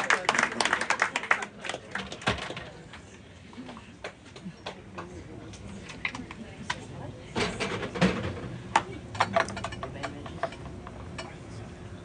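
Room noise in a small club between tunes: faint voices and scattered short clicks and clinks, busiest in the first two seconds and again about seven to nine seconds in.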